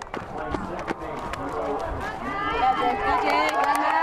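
A softball team's players clapping and slapping high-fives, with sharp claps throughout. Excited voices cheer and shout over them, building from about halfway through.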